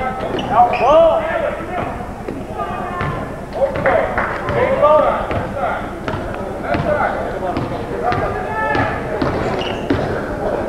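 Basketball bouncing repeatedly on a hardwood gym floor as it is dribbled, with players' and spectators' voices calling out.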